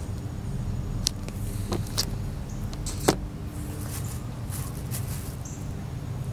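Wax crayon scratching on coloring-book paper, with three sharp clicks about a second apart, the loudest about three seconds in, over a steady low rumble.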